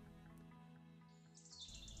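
Near silence: faint background music holding steady notes, with faint high bird chirping coming in near the end.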